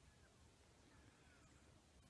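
Near silence: faint outdoor room tone.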